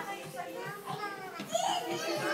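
Small children's voices and adults talking over one another, the mixed chatter of young children playing in a room.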